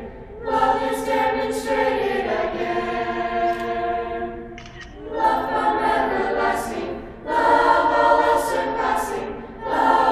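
Mixed youth choir of boys and girls singing a cappella in harmony: sustained chords in phrases, broken by brief breath pauses just after the start, near the middle, about seven seconds in and near the end.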